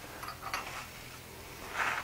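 Quiet workshop room tone with faint small handling noises as a small steel chisel is picked up at the anvil, including a light tick about half a second in and a brief soft hiss near the end.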